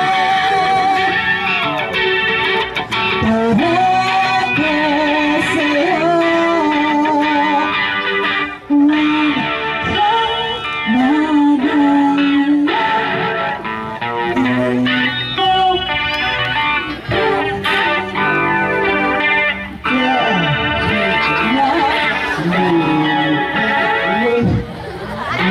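Live band music: an electric guitar played through distortion, with a woman singing into a microphone.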